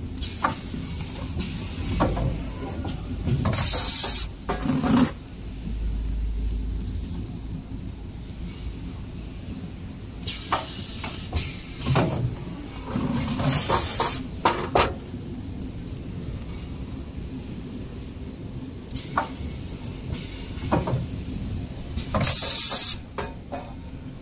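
XY GU 27B double-head serviette tissue bag packing machine running with a steady mechanical hum and scattered knocks. Three loud, short hisses of air come about nine seconds apart, with fainter ones between.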